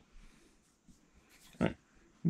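Near silence: room tone, broken by a brief spoken "All right" near the end.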